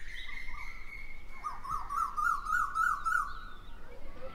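Birds calling: a long steady whistled note, then a wavering call that rises and falls about six times, with short high chirps repeating above it.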